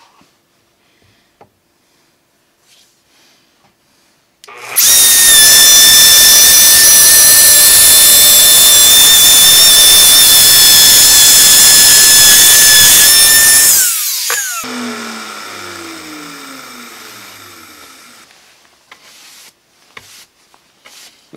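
Handheld router with a 3/4-inch straight bit cutting a dado for T-track in plywood. It starts about four seconds in, runs loud at a steady high pitch for about nine seconds, then is switched off and winds down with a falling pitch.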